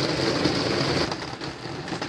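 A steady machine-like hum with a hiss over it, dropping a little in level about halfway through.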